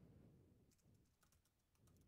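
Very faint typing on a computer keyboard: a few scattered, light keystrokes.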